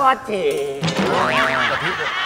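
A comic boing-like sound effect whose pitch arches up and down, with voices mixed in.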